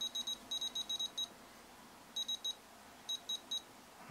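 Futaba T14SG radio transmitter beeping as its touch-sensor dial is scrolled through the menu. Short, high beeps come in a quick run over the first second or so, then in two groups of three.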